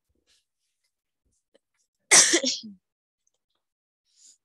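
A person sneezing once, a sudden loud burst about two seconds in that dies away in under a second.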